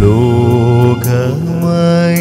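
Male singer performing a slow Malayalam funeral hymn with keyboard accompaniment. The voice comes in strongly right at the start and holds long, bending notes.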